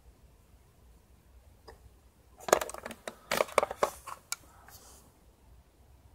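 Handling noise: a quick run of small clicks and taps from about two and a half to four and a half seconds in, over a quiet room.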